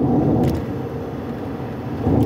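Steady low background rumble with a faint click about half a second in.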